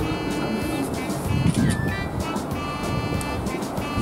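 Background music with sustained high notes.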